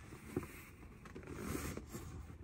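Fabric seat cover being pulled down over a truck's rear seat back: faint rustling and scraping, with a small knock about half a second in.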